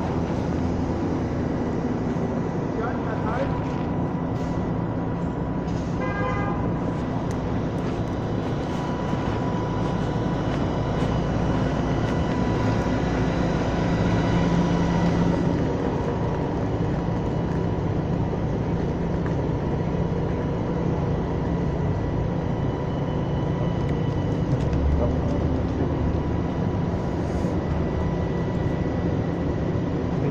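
Street traffic noise with the steady hum of idling vehicles, and a brief car horn toot about six seconds in.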